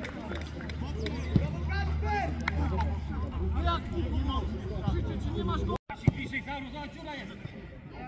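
Overlapping shouts and calls of players and spectators across an open football pitch, the voices distant and scattered. A single sharp knock comes about one and a half seconds in, and the sound cuts out for an instant near six seconds.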